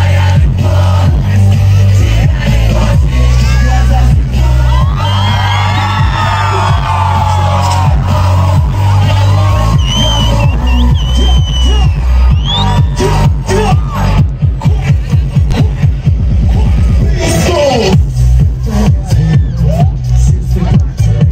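Loud pop music from a concert PA: a heavy bass beat with vocals over it. In the second half the beat turns into rapid, even pulses.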